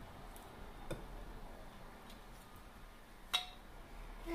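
Quiet handling of a stainless-steel pineapple corer-slicer: a few faint ticks, then one sharp, briefly ringing clink near the end.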